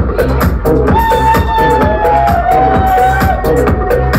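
Loud electronic dance music from a club sound system during a DJ set, with a steady kick-drum and hi-hat beat. About a second in, a held high note comes in over the beat and slides slightly down in pitch for about two seconds.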